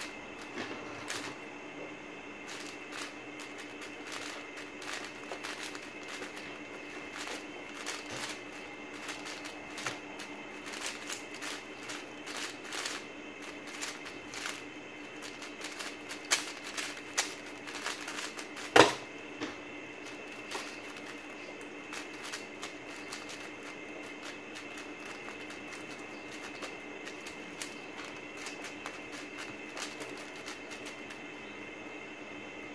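WuQue M 4x4 speed cube being turned fast, a dense run of plastic clicks and clacks. Just under two-thirds of the way in, a single loud knock comes as the keyboard timer is stopped at the end of the solve. Slower, sparser turning follows.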